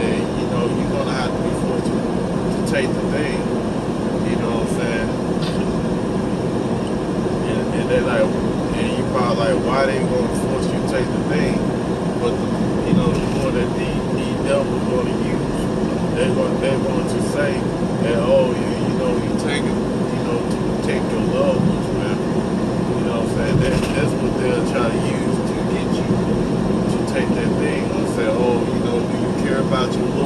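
Steady engine and tyre noise heard from inside a vehicle's cab cruising at highway speed.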